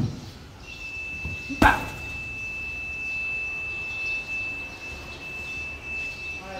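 Gloved punches on a leather heavy bag: a short thud at the start, then one hard, loud smack about one and a half seconds in. Under them, from just under a second in, a single steady high-pitched electronic tone holds.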